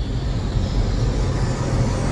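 Cinematic whoosh sound effect for an animated logo intro: a rush of noise over a deep rumble, swelling toward the end.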